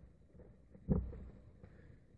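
Quiet room with a small click at the start and one dull thump about a second in.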